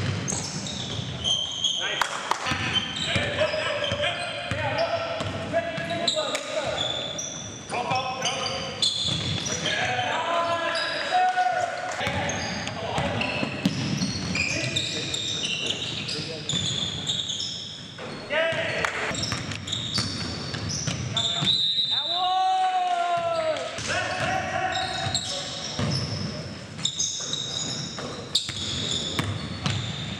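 Live basketball game sounds in a gymnasium: a basketball bouncing on the hardwood court, sneakers squeaking, and players calling out, all with the echo of a large hall.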